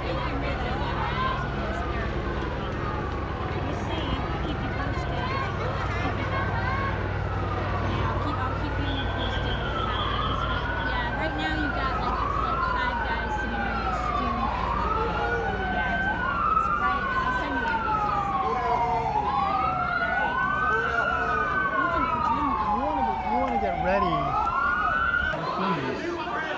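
Police siren wailing, its pitch rising quickly and falling slowly about every two seconds, growing louder through the second half with the wails overlapping. A steady low rumble runs underneath.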